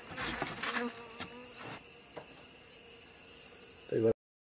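Night insects trilling steadily at a high pitch, with a short low buzz about a second in and a few light handling clicks. A brief thump near the end is the loudest sound.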